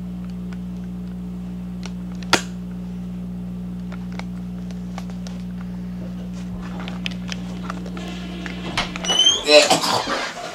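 Steady low electrical hum, with one sharp click a little over two seconds in. Near the end the hum stops abruptly and voices take over.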